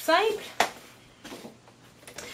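Cardstock being handled on a paper trimmer: one sharp tap about half a second in, then faint paper rustling.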